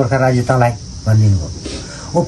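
A man speaking in short phrases, with a pause in the second half, over a steady high hiss.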